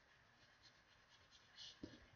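Faint scratching of a pencil on paper as lines are drawn, with short strokes and a brighter one near the end.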